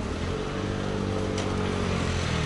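A motor running with a steady low hum of several pitched tones. It starts suddenly and grows slightly louder.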